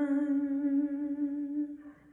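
A woman singing solo into a microphone, holding one long note on a steady pitch that fades out near the end. No other instrument is heard.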